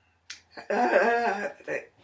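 A woman's wordless vocal sound: a sharp click about a third of a second in, then a drawn-out voiced syllable of just under a second, followed by a short syllable.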